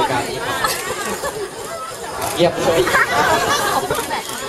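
A man speaking Thai into a handheld microphone, with background chatter.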